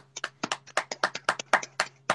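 Hand clapping: quick, even claps, about seven a second, heard over a video call.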